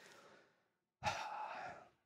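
A man's sigh: one breath out, close to a handheld microphone, starting about a second in and lasting under a second.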